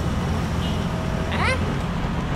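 Steady low rumble of road traffic, with one short sound about a second and a half in that rises quickly in pitch.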